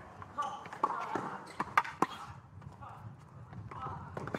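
Tennis ball strokes and bounces during a rally on a hard court: a few sharp pops, the two loudest close together about two seconds in, with voices in the background.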